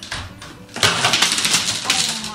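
A loud clatter of many clothes hangers falling in a closet, starting about a second in.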